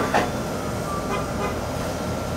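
Steady low room hum and rumble in a deli, with the end of a short laugh at the very start.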